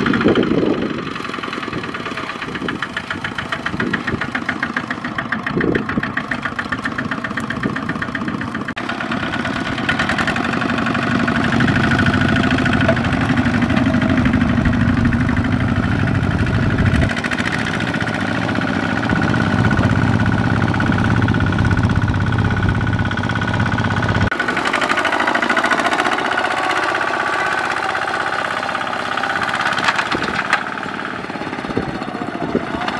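Kubota ZT155 power tiller's single-cylinder diesel engine running under load as it pulls a loaded trailer through sticky mud, its note shifting several times.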